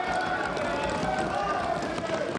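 Parliament members thumping their desks in rapid, irregular beats and calling out together in approval, a steady din of many voices and thumps.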